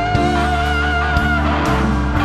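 Instrumental smooth jazz: a lead instrument holds a long, slightly wavering note over bass, chords and a steady drum beat, and a new phrase begins near the end.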